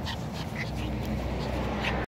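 Pomeranian puppy close to the microphone, making a few short, faint high-pitched sounds as it comes up. A low steady rumble comes in under it about a second in.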